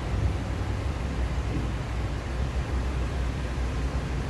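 Steady low rumble with a faint even hiss: background room noise, with no speech.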